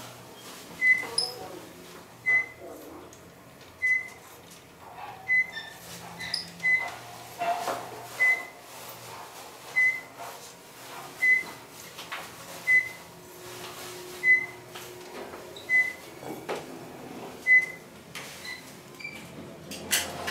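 Modernized Otis traction elevator car travelling up, sounding a short high floor-passing beep about every one and a half seconds as each floor goes by, over a low steady hum from the ride.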